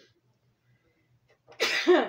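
A woman sneezes once, loudly, about one and a half seconds in.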